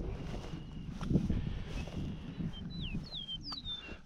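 Footsteps through dry, tall grass with wind buffeting the body-worn camera's microphone, uneven and rustling. A few short, high, falling chirps come in near the end.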